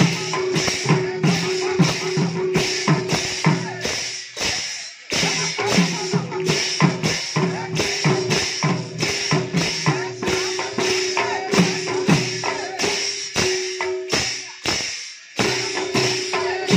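Several Odia mrudanga, clay barrel drums of Odissi sankirtan, played together with the hands in a fast, even rhythm. The playing stops short about four seconds in and again near the end, each time resuming within about a second.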